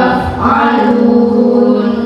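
A group of children singing together in unison into microphones, ending on one long held note that stops near the end.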